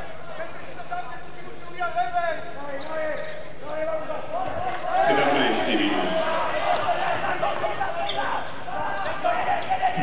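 Handball bouncing on a wooden court amid spectators' voices and shouts in the hall, the shouting getting louder about five seconds in.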